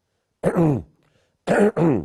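A man clearing his throat twice, about a second apart.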